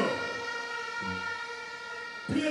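A steady held chord of electronic tones over the concert sound system, with a short low bass note about a second in.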